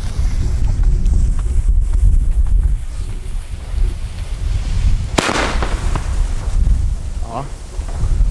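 A firework mine (fire pot) fires once, about five seconds in: a sharp bang followed by about a second of hissing as the charge lifts. Wind rumbles on the microphone throughout.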